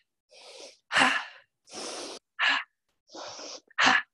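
A person doing fast, forceful yoga pranayama breathing: a softer breath followed by a sharp, louder one, three times in quick rhythm, a little over a second per pair.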